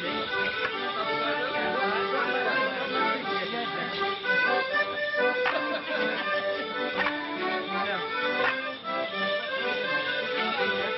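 A traditional Morris dance tune played on accordion and fiddle. A few sharp knocks sound over the music in the second half.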